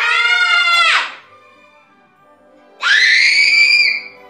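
Two loud, high-pitched screams from children, each about a second long: one right at the start and another about three seconds in, over faint background music.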